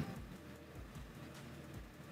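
Faint room tone: a steady low hiss and hum, with a couple of faint ticks in the second half.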